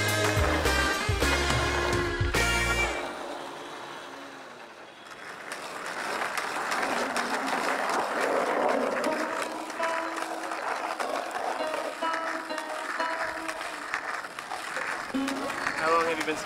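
Background music soundtrack. About three seconds in, the heavy bass beat drops out and the level dips, then a lighter passage of held tones without bass fades in.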